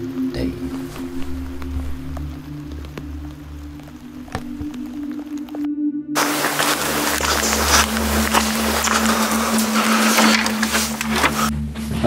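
Background ambient music with a steady low drone. About six seconds in, the sound briefly drops out, then a loud, even rushing noise joins the drone and runs until just before the end.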